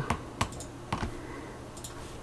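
Two sharp computer mouse clicks about half a second apart, with a faint tick near the end, over a low steady hum.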